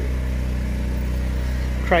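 Portable generator running steadily inside a box lined with acoustic board, an even low hum.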